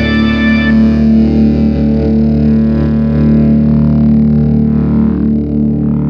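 Heavy metal music: a distorted electric guitar chord held and ringing out over sustained low notes. The upper notes drop away about a second in.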